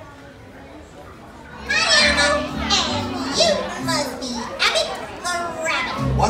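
Low room noise, then about two seconds in a stage show's soundtrack starts loudly over the theatre's speakers: a high voice over music with a steady bass line, from a children's character show.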